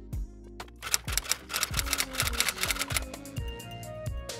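Background music with sustained bass notes, joined by a rapid run of typewriter key clicks from about a second in to about three seconds in. The clicks are a typing sound effect as the on-screen question is typed out.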